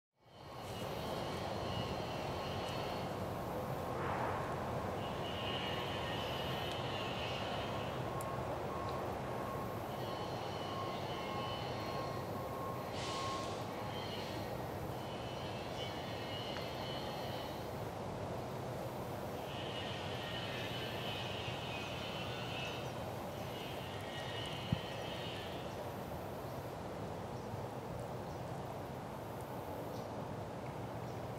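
Steady outdoor woodland background noise with a low continuous rumble, and recurring high-pitched phrases a second or three long. A faint thin tone fades out about halfway through, and there is a single sharp click near the end.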